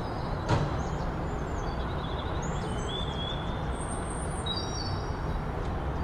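Outdoor ambience: several birds chirping and whistling in short high calls over a steady low rumble, with a brief knock about half a second in.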